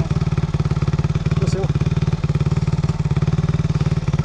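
Enduro motorcycle engine idling close by, a steady fast pulsing beat that holds even throughout.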